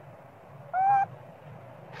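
A macaque gives one short call with a clear, steady pitch about three quarters of a second in, over a faint steady outdoor background.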